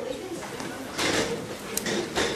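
Chairs scraping and bumping as a roomful of people stand up, with a loud scrape about a second in and a sharp knock near the end.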